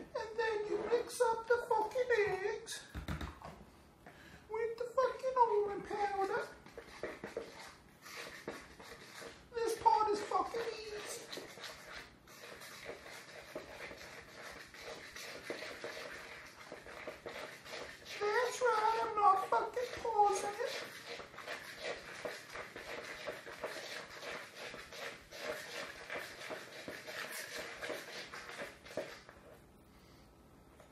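A man's voice in four short phrases. Between and after them comes a continuous scratchy rustle of a utensil and hand mixing a dry almond-flour and sugar paste in a plastic bowl.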